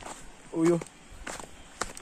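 Footsteps on a rocky dirt trail, a few separate steps, with a brief pitched vocal sound from a person about half a second in, the loudest moment.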